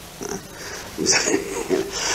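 A man's voice making short wordless throat sounds: a brief grunt near the start, then a longer throat-clearing sound from about a second in.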